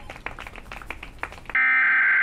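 Quiet room tone with a few faint clicks, then about one and a half seconds in a loud, steady electronic beep tone starts abruptly, a held buzzer-like note. It is the sign-off tone of a mock broadcast announcement.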